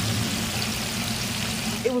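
Fish frying in a deep fryer of hot oil: a steady, even sizzle with a faint low hum beneath it.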